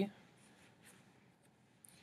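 Near silence: quiet room tone with a few faint, soft ticks.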